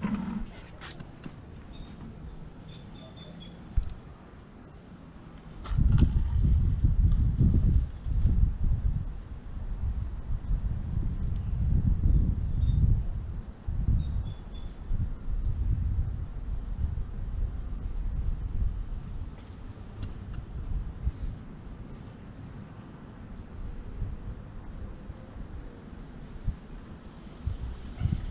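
Wind buffeting the microphone: a low, uneven rumble that starts about six seconds in and swells and fades in gusts, with a few small clicks before it.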